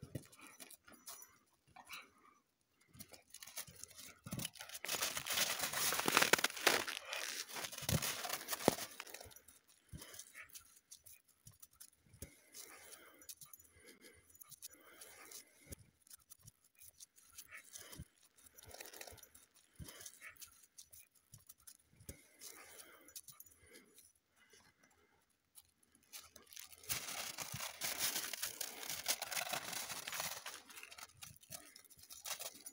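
Crunching and scuffling in crusty snow as a dog runs after a balloon, louder for a few seconds from about four seconds in and again near the end, with scattered soft crunches in between.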